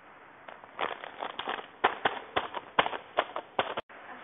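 A clear plastic sachet filled with granules crinkling and crackling as it is handled and squeezed, in an irregular string of sharp crackles. It cuts off suddenly near the end.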